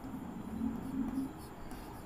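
Chalk writing on a chalkboard: faint scratching and tapping of the chalk as a number and letters are written.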